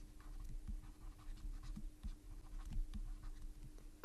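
Faint scratching and light taps of a stylus writing on a tablet, over a steady faint hum.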